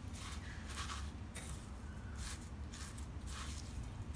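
Dry breadcrumbs rustling and crunching as a fish fillet is pressed and turned in them by hand in a stainless steel bowl: a series of short, irregular rustles over a steady low hum.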